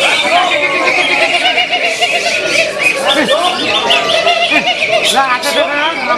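Contest songbirds, among them a caged greater green leafbird (cucak hijau), singing together in a dense, unbroken chorus of chirps, trills and whistles, with men's voices shouting over it.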